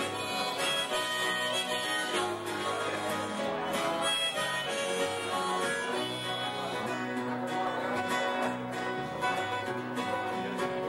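Small live band playing an instrumental passage: strummed acoustic guitar, electric bass and keyboard, with long held notes on top.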